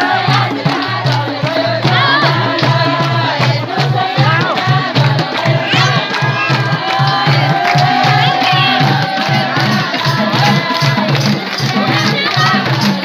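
Nepali Teej folk song with a steady drum beat and singing, over the voices of a large crowd.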